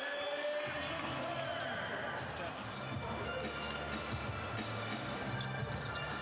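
Basketball game broadcast sound: steady arena crowd noise with music underneath and a ball dribbled on the hardwood court.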